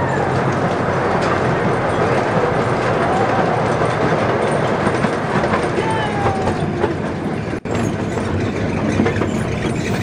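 Steady, loud rumble and clatter of an open-sided passenger train car running along its track, heard from aboard, with a momentary break in the sound about three-quarters of the way through.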